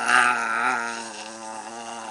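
A person gargling a mouthful of water while holding a low voiced tone, which wobbles rapidly as the water bubbles; it is loud at first and eases off about a second in.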